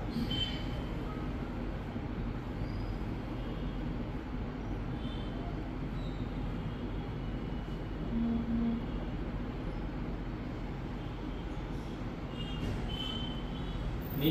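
Hot air rework station blowing a steady hiss of hot air onto a phone motherboard to melt the solder while a coil is refitted.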